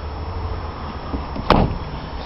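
Steady low rumble with a single sharp knock about one and a half seconds in.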